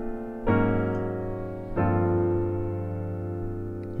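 Jazz piano chords, each struck and left to ring. A chord carries over from just before, a new one comes in about half a second in, and a third about a second later, held and fading. It is a progression from B-flat that reaches a new diatonic chord through a tritone-substitute dominant.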